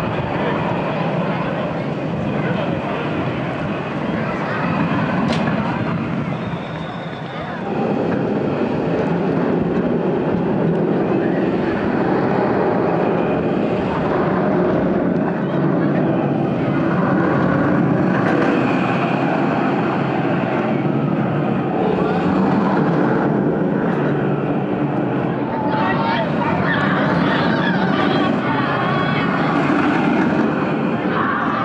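Theme-park ambience: the steady rumble of an ABC Rides tube steel roller coaster running on its track, mixed with visitors' voices, briefly dropping about seven seconds in.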